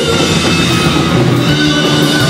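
Live rock band playing loudly: electric guitars over a drum kit.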